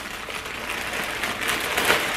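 Plastic poly mailer bag crinkling and rustling as it is handled and pulled open, a steady crackle of many small ticks.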